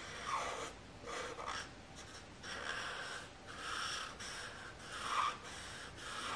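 Felt-tip marker rubbing across paper while colouring in, in a series of separate strokes about half a second to a second long.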